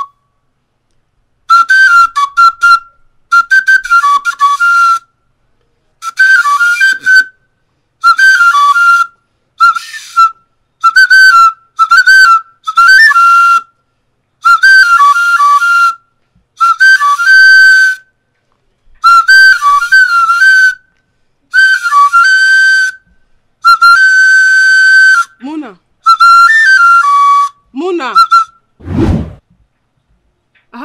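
A small wooden flute played in short, loud melodic phrases of trills and held notes, with brief silences between them. Near the end come a short voice and a single low thud.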